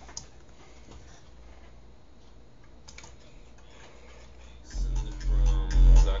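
Faint computer keyboard clicks while playback is stopped. Near the end the electronic drum-and-bass track starts again loudly with a heavy bass line.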